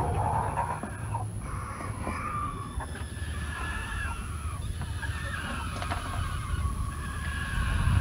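Speckled Sussex rooster crowing in several long, drawn-out, strange-sounding calls, the really funny sounds the breed makes.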